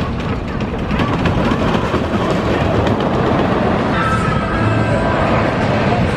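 A wooden roller coaster train running along its wooden track: a steady rumble with a rapid clatter of wheels over the track.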